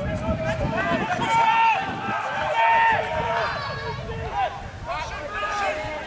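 Several voices shouting across a rugby pitch from players and touchline spectators, short high calls overlapping one another throughout, over a low rumble of wind on the microphone.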